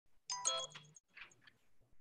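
A short electronic chime from the Zoom meeting software, its notification ding lasting under a second, followed by a few faint soft sounds.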